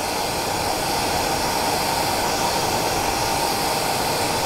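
Hair dryer running steadily, a constant rush of air with a steady whine in it, blowing back the partridge hackle fibres on a fly.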